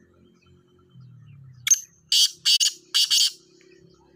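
Caged black francolin calling: a short note, then three loud, harsh notes in quick succession.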